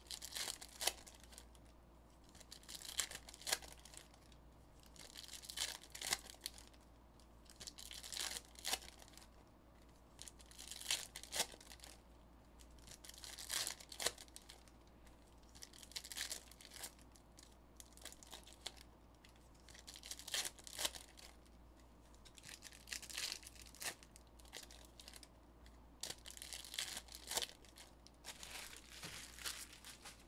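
Foil wrappers of Panini Mosaic basketball card packs being torn open and crinkled one after another, a short burst of tearing every two to three seconds.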